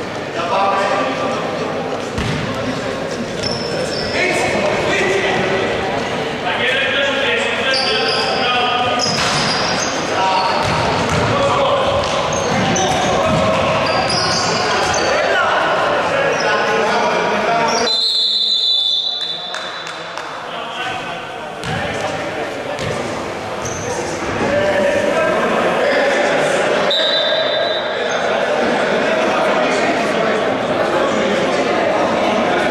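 A basketball bouncing on a wooden gym floor during play, with players' voices echoing around a large hall.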